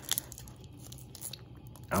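Foil booster-pack wrapper crinkling and crackling as fingers pinch and pull at its sealed top, resisting being torn open. The sharpest crackle comes just after the start, then fainter crinkles.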